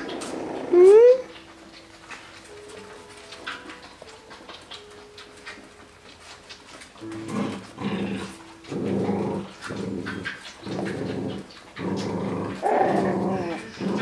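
Six-week-old Coton de Tulear puppies play-growling as they wrestle. One sharp rising yelp comes about a second in. Over the second half there is a run of short growls, roughly one a second.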